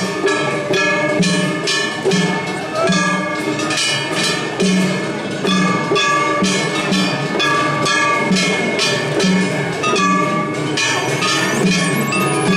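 A festival float's hayashi band playing: hand-held gongs (kane) struck in a fast, steady clanging beat, ringing over regular taiko drum beats.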